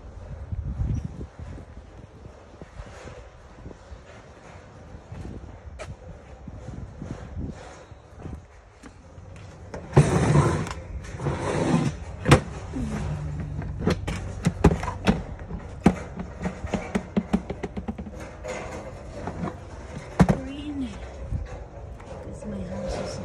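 Handheld handling noise with a loud rustle about ten seconds in, then a run of sharp clicks and knocks over the next several seconds. A short hum-like voice sound comes near the end.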